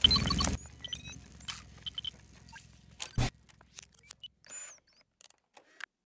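Intro sound effects for an animated title card: a loud noisy burst at the start with small electronic blips, a second short hit about three seconds in, then scattered faint clicks and chirps dying away.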